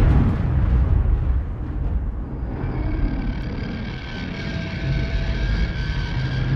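Intro sound effect: a sudden boom at the start opens a deep, steady rumble, and held music tones join in about halfway through.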